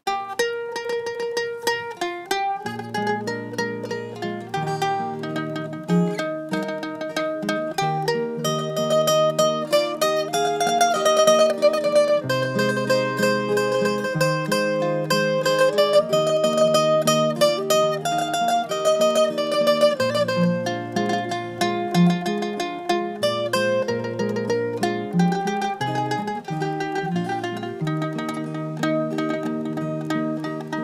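Mandolin playing an Irish traditional melody over acoustic guitar accompaniment, the guitar's lower chord notes joining about two and a half seconds in; an instrumental introduction with no singing yet.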